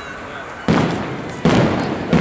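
Aerial fireworks salute: two loud shell bursts about three-quarters of a second apart, each trailing off in an echo.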